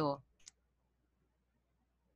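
A single short, faint click about half a second in.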